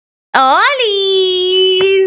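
A woman's voice calling out a long, drawn-out "¡Hola!": the pitch rises, then is held steady on one note for over a second.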